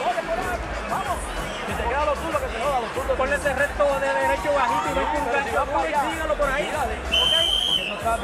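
A cornerman's voice giving a boxer instructions between rounds, over arena crowd babble. A short, high, steady whistle-like tone sounds near the end.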